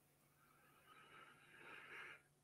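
Near silence: faint room tone through a headset microphone.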